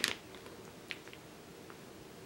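Faint handling of a clear plastic bag holding a screwdriver: a few soft crinkles and light ticks over quiet room tone.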